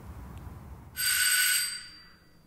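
Doorbell ringing once: a bright metallic ring starts suddenly about a second in, lasts under a second and then dies away.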